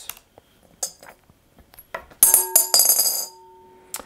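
A coin landing in a glass bowl: a sudden clatter about two seconds in, a brief rattle as it spins and settles, and the bowl ringing on with two steady tones that fade away over about a second and a half. Before it, a few faint clicks of laptop keys.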